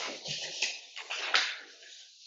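Sheets of paper rustling and being handled, in a few short bursts that fade toward the end.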